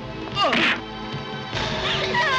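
A film fight sound effect: one loud punch smack with a falling whoosh, about half a second in, over the background score. The music gets louder near the end.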